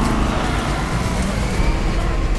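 Car engine revving hard as the accelerator is floored, with loud, dense engine and road noise that comes in suddenly.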